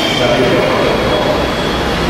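A man's voice preaching over a public-address microphone, with a steady rushing, rumbling noise under it.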